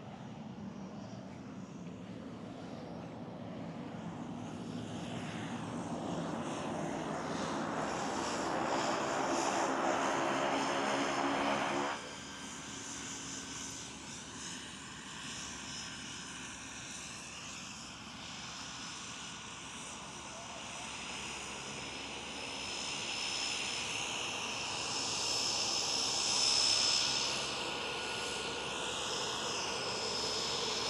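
Single-engine turboprop jump plane coming in and taxiing on the runway. Engine and propeller noise swells and then drops off sharply partway through. It rises again toward the end with a thin high turbine whine as the plane rolls closer.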